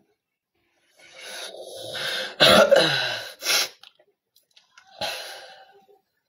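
A person coughing: a longer rasping cough that peaks around the middle, then a short cough near the end.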